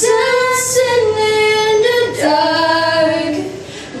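Two young women singing a slow ballad together unaccompanied, in long held notes that glide between pitches, with a short breath gap near the end before the next phrase.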